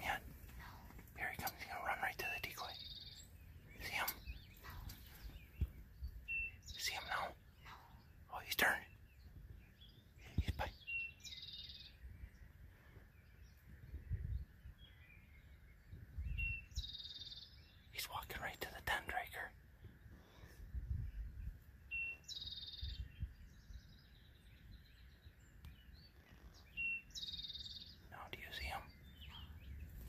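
Songbirds singing short high phrases repeated every few seconds, over scattered faint clicks and rustles.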